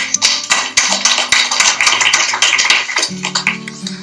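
Background music: quick plucked or strummed guitar over held bass notes.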